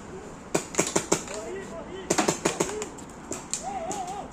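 Paintball markers firing: sharp pops come in uneven clusters of several shots, with faint shouting from other players far off between them.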